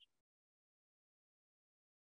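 Near silence: the sound cuts out completely to dead digital silence just after the last word trails off.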